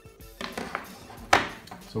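Handling of the drive's sheet-metal RF shield: a few small knocks, then one sharp metallic clink a little past the middle that rings briefly.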